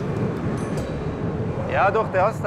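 Low, steady rumble of highway traffic and wind on an open bridge deck, then a man starts speaking near the end.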